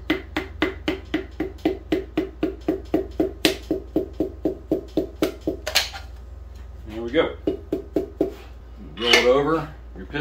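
Rapid light taps, about five a second, of a mallet handle on the top of a piston, driving it through a ring compressor into a cylinder bore of a 4.8 LS engine block, each tap with a short metallic ring. The tapping stops about six seconds in.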